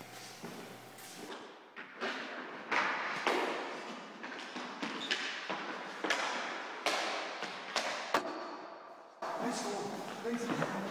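Hockey puck passed between two sticks, clacking sharply off the blades about eight times at uneven intervals, each hit ringing briefly in a large room.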